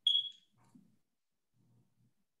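A single short high-pitched beep right at the start, fading within about half a second, followed by faint low noises.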